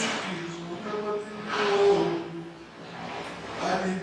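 A man's voice talking, with a few louder, breathy stretches.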